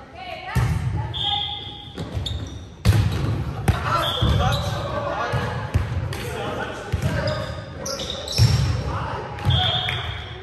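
Volleyball play in an echoing gym: the ball is struck by hands several times in sharp smacks and bounces on the hardwood floor, with short high-pitched squeaks from sneakers on the court.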